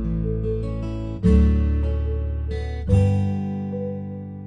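Background music of strummed acoustic guitar: a new chord is struck twice, about a second in and again near three seconds, each ringing and fading.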